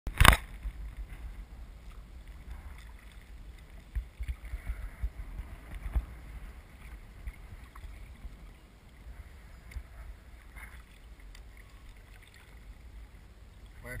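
Wind buffeting the microphone of a deck-mounted camera on a sea kayak, a low irregular rumble, with light paddle and water sounds. A sharp knock comes right at the start.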